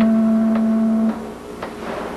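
Background music: a low brass note held steady, cutting off about a second in, then a quieter stretch.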